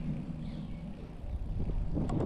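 Bicycle riding noise on an asphalt path: a steady low rumble of tyres rolling and wind on the microphone.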